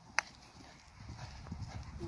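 Hooves of a black quarter pony cantering on grass turf, faint low thuds that grow louder near the end. About a quarter of a second in comes one sharp knock, a polo mallet striking the ball.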